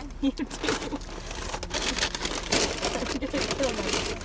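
A McDonald's paper takeout bag rustling and crinkling as it is handled and opened, in irregular crackles.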